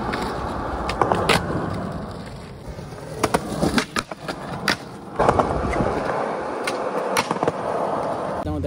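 Skateboard wheels rolling on concrete, with a run of sharp wooden clacks as the board pops, hits the ledge and lands. The rolling eases off in the middle and picks up again about five seconds in.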